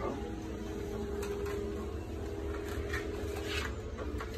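Small desktop printer running steadily as it prints a page, its hum stopping shortly before the end.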